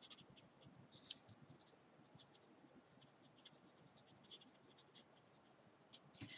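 Faint scratching of a marker pen's tip on paper: quick, short, irregular dabbing strokes, a few a second, laying in foliage.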